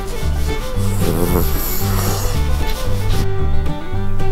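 A hand rubbing a spaniel's fur, a soft rustling rub for about a second and a half in the first half, over string-band background music with a steady bass line.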